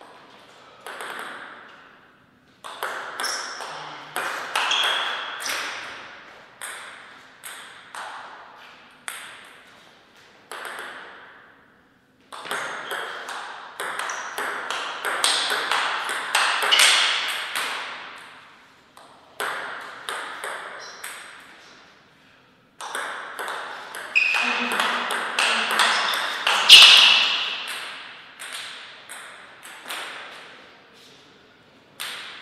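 Table tennis rallies: the plastic ball clicking sharply off the table and the players' rubber-faced bats in quick alternation. The clicks come in several runs of play, each broken off by a short pause between points.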